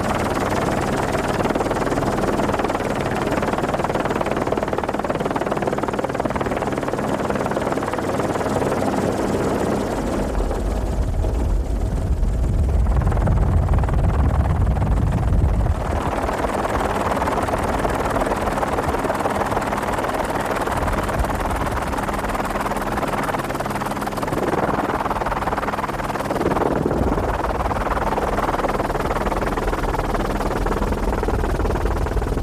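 Steady drone of a helicopter's engine and rotor, heard from aboard the aircraft, with a deeper, louder rumble for a few seconds in the middle that cuts off suddenly.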